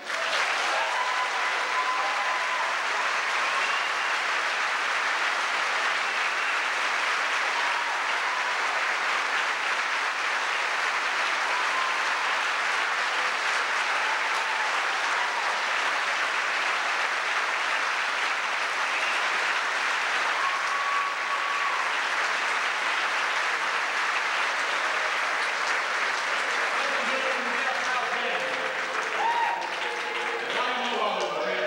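Theatre audience applauding steadily, breaking out the moment an a cappella quartet's song ends, with a few cheers rising above it. Near the end a man starts speaking over the dying applause.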